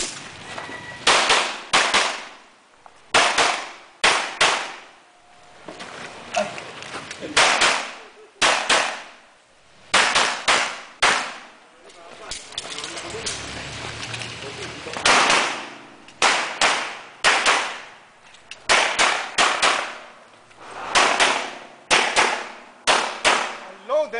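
Pistol shots fired in quick pairs, one pair after another, each crack followed by a ringing echo. A gap of a couple of seconds falls about halfway, then the paired shots resume, with a faster run of four near the end.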